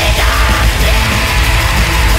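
Black metal recording: dense, heavily distorted guitars and drums with a harsh screamed vocal over them.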